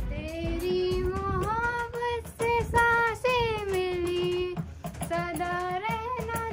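A young female voice singing a song in long held notes that slide up and down in pitch, with faint rhythmic taps behind it.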